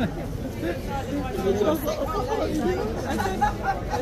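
People talking and chatting, voices overlapping at times, with no other sound standing out.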